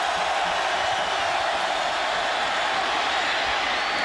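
Steady noise of a large football stadium crowd, heard through a TV broadcast. It is the home crowd during the visiting offense's third-down play.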